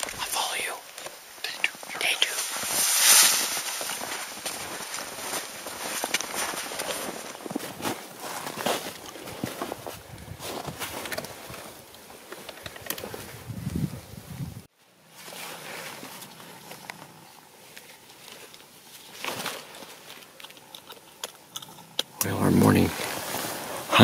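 Low whispering and the rustle and crunch of someone moving through snow and brush, with many small irregular clicks. The sound cuts off abruptly about two-thirds of the way through, then goes on more quietly.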